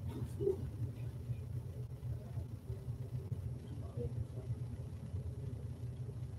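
Faint, indistinct murmured voices of people praying quietly, over a steady low room rumble.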